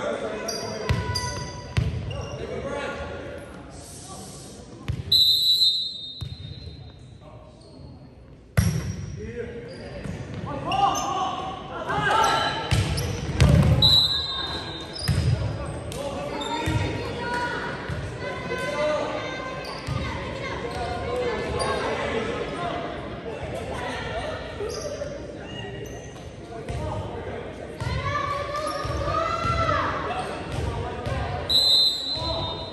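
Volleyball match play in a gymnasium: the ball being struck in a rally, with sharp hits (the sharpest about eight and a half seconds in), shoes squeaking on the hardwood court, and players and spectators calling out, all echoing in the large hall.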